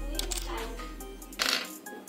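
Miniature porcelain dishes clinking and clattering as they are picked up and stacked, with a louder clatter about one and a half seconds in, over background music.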